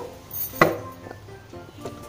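Soft background music, with a single sharp knock a little over half a second in, from the cardboard box being handled on the table.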